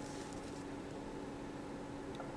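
Quiet room tone: a faint steady hiss with a low steady hum.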